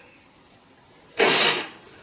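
A single sharp sneeze a little over a second in, loud and short.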